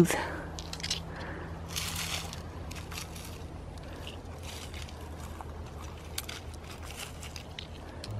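A hand sifting through loose granite gravel and pebbles among dry leaves: scattered small clicks and scrapes of stones, with a brief rustle about two seconds in, over a steady low hum.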